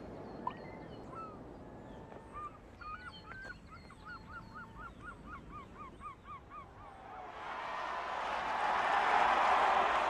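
Birds chirping in a garden, one calling a quick run of short repeated notes, about five a second. From about seven seconds in, the noise of a large crowd swells up and becomes the loudest sound.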